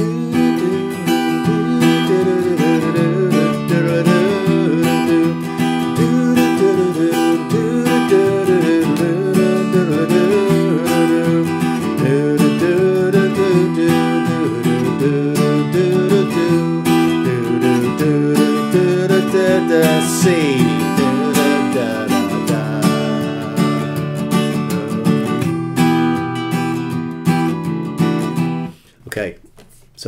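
Capoed steel-string acoustic guitar strummed in a steady rhythmic pattern through the verse chords: A minor and G back and forth, then C, G and back to A minor. The strumming stops near the end.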